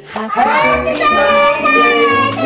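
A group of young children singing together. After a brief pause the voices slide up into long held notes.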